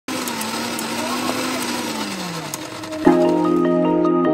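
BOSS electric mixer grinder running, its motor note dropping in pitch about two seconds in. A marimba-like music track starts about three seconds in.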